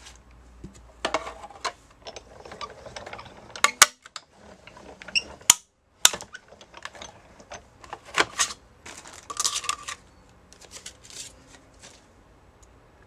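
Hand-cranked Sizzix Big Shot die-cutting machine feeding a die, cardstock and magnetic platform through its rollers, preceded by the clicks and rustles of the sandwich being handled. The sound is a run of irregular clicks and crunching noises, densest in the second half, with a brief gap of silence about halfway through.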